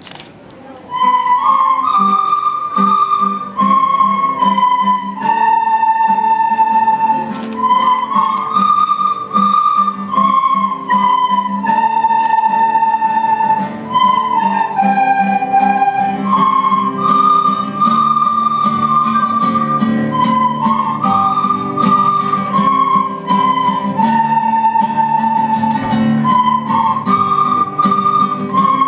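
A large children's ensemble of recorders playing a melody in unison over a lower accompaniment, coming in about a second in.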